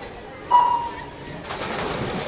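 A swimming race's start signal: a single steady electronic beep about half a second in, lasting about half a second. About a second later comes the splashing of swimmers diving off the blocks into the pool.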